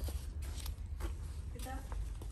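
Quiet voice briefly near the end over a steady low rumble, with a few light clicks in the first second.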